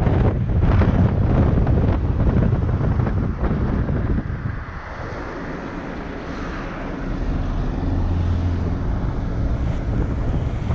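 Wind rushing over the microphone from a moving minibus, with its engine and road noise underneath. The wind eases a little before halfway, leaving a steadier, lower engine hum.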